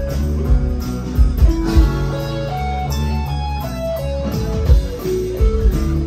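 Live band in an instrumental break: an electric lead guitar plays a melody line that steps up and down over bass, drums with regular hits, and a strummed acoustic guitar.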